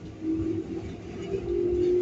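Keikyu 600 series electric train running, heard from inside the passenger car: a low rumble of wheels on rail with a steady motor whine that comes in shortly after the start and rises slightly in pitch.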